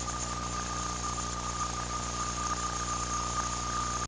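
Steady hiss and electrical hum with a constant high-pitched whine, the noise of an old camcorder videotape soundtrack, cutting off suddenly at the very end.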